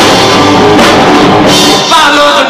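A rock band playing loud live: electric guitars and a drum kit, with no break in the playing.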